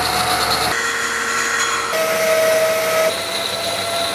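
Metal lathe cutting linen phenolic, with a shop vac running alongside. Loud steady hiss with high whining tones, whose pitch jumps abruptly about a second in and again about two and three seconds in.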